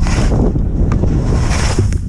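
Wind buffeting a GoPro microphone, a constant low rumble, with skis hissing through soft snow in two turns, one at the start and one about a second and a half in.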